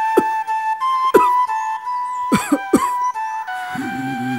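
Background music: a slow flute melody of held notes stepping up and down in pitch. A few brief sharp sounds break in over it.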